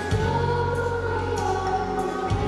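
Singing: a girl's voice at a microphone holds a slow melody with long, gliding notes, over deeper steady notes that come in just after the start.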